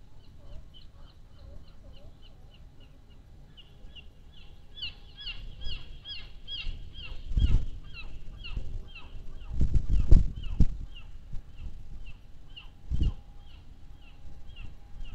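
A bird calling over and over in a fast series of short, high notes, about three a second, louder for a few seconds near the middle. Three low rumbling thumps come through about halfway, at ten seconds and near the end.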